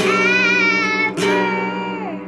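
A young girl singing two long held notes to her own acoustic guitar, strumming it once at the start of each note, the second strum about a second in.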